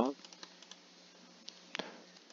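A few faint, scattered clicks at a computer over a low steady hiss, the clearest near the end.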